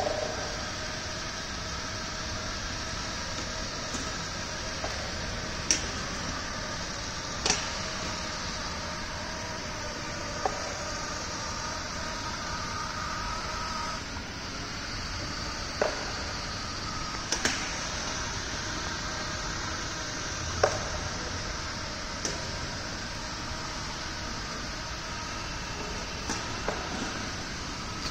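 Small electric drive motors of a model trash-collecting robot boat running steadily with a faint whine as it moves slowly under automatic control, with a few sharp clicks scattered through.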